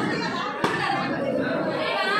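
Group of people talking over one another, several voices at once, with a single short sharp knock about two-thirds of a second in.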